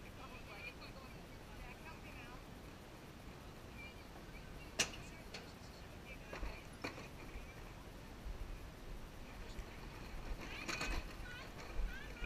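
Faint voices of people some way off over outdoor background noise. A single sharp click comes about five seconds in, and a few softer knocks follow later.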